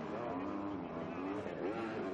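Motocross bike engines on the track, their pitch rising and falling as the riders work the throttle through the corners.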